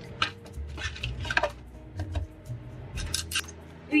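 A paperboard cake box being folded into shape by hand: a string of crisp creases, snaps and rustles as the flaps are bent and the tabs pushed into place, loudest in two clusters in the middle and near the end.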